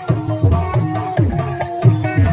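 Loud Javanese bantengan accompaniment: hand-drum strokes with pitch sliding downward, several a second, over a melodic line of held notes.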